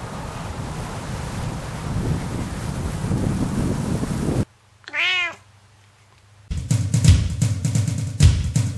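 A dense rushing noise for the first four seconds or so cuts off, then a domestic cat gives one short meow that rises and falls in pitch. Music with a steady beat starts about six and a half seconds in.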